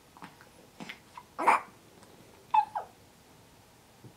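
A young baby cooing and making short vocal sounds, the loudest about a second and a half in and another about a second later that falls in pitch.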